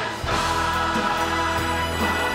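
Large choir singing with orchestral accompaniment, a sustained full chord that swells in again about a quarter second in.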